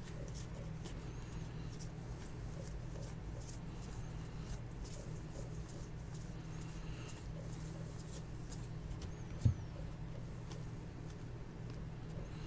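Faint ticks and slides of baseball trading cards being flipped through by hand, over a steady low electrical hum, with one sharper knock about nine and a half seconds in.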